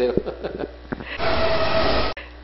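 A television transition sound effect: a loud rush of noise with one steady tone running through it. It swells in just past a second and cuts off abruptly as the graphic wipe ends.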